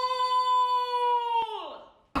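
A long, high, howl-like call held on one steady note, gliding down and fading about one and a half seconds in.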